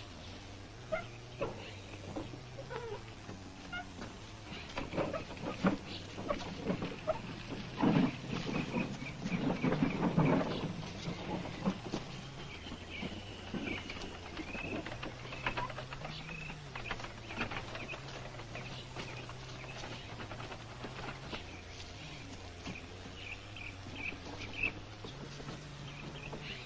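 Footsteps and rustling through brush, loudest about eight to eleven seconds in, with repeated short bird chirps and a low held tone underneath.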